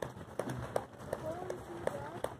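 Footfalls of many runners' shoes slapping on asphalt as a pack of racers passes close by, an irregular patter of steps, with faint voices in the background.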